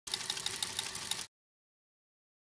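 A brief burst of fast mechanical chattering, about a second long, that cuts off abruptly.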